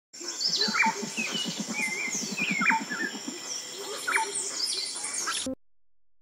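Birds chirping and calling, with several sharp downward-sweeping calls, over a rapid low rattling in the first few seconds; all of it cuts off suddenly about five and a half seconds in.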